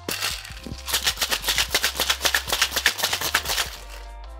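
Ice rattling inside a metal tin-on-tin cocktail shaker shaken hard, a fast, even rattle of many knocks a second that stops just before the end. Quiet background music underneath.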